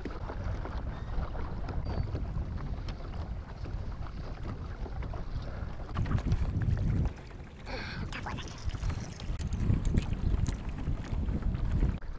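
Wind buffeting the camera microphone on open water, a steady low rumble that eases off briefly about seven seconds in.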